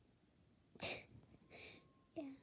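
A child's sudden, sharp burst of breath through the nose and mouth about a second in, followed half a second later by a softer, breathy sound.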